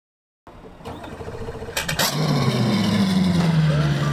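An engine running steadily with a low hum, after two sharp clicks about two seconds in.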